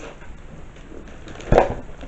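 A parcel box being handled, with soft rustling and one sharp knock about one and a half seconds in as the box or its lid is set down.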